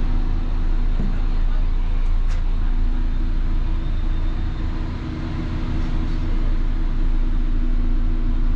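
Steady low electrical hum of refrigeration machinery, unchanging throughout, from a freezer that has just been plugged in and whose compressor has not yet started.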